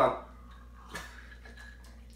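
A man sipping a drink from a glass with ice cubes, mostly quiet, with one faint click about a second in.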